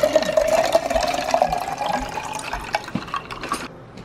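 Water pouring into a glass mason jar over ice, the pitch of the filling sound rising steadily as the jar fills. The flow stops shortly before the end.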